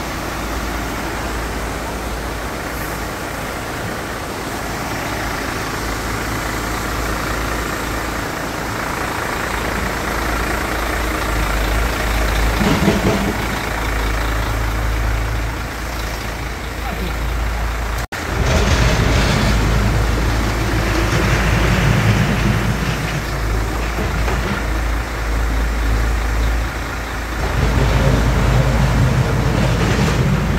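A heavy vehicle's engine running steadily, louder in the second half.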